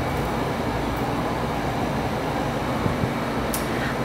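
Steady background rumble with a hiss, even in level throughout.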